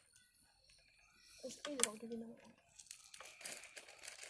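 Wood fire crackling in a metal fire-pit basket: faint scattered pops and snaps, more of them in the second half.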